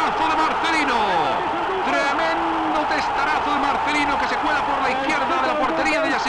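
A man's excited voice in an old broadcast football commentary, calling out in long, drawn-out phrases right after a goal, over the steady background noise of the archive recording.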